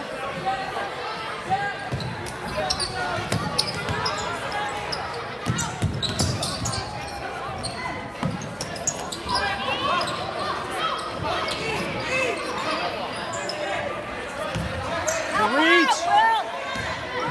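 A basketball being dribbled on a hardwood gym floor, short thuds amid steady spectator chatter echoing in a large gymnasium, with a louder shout near the end.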